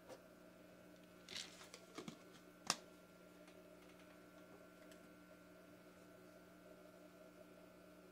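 Near silence: room tone with a faint steady hum. About a second in there is a short rustle, then a few small clicks, and a sharper click just under three seconds in.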